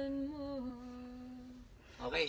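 A woman humming a slow melody without accompaniment: a held note that lifts briefly, then settles onto a slightly lower note held for about a second before fading out.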